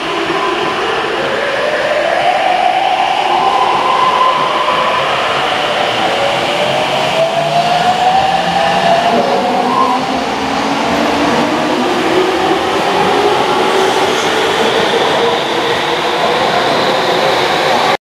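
Electric train accelerating away, its motor whine made of several tones that climb slowly in pitch, over a steady rumble of wheels on rail. The sound builds over the first few seconds and then holds.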